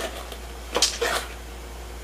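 Cardboard box lid being pulled open: two short scraping rustles of paperboard about a second in.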